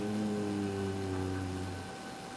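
A man's low, closed-mouth hum, one drawn-out "mmm" that sinks slightly in pitch and fades out near the end.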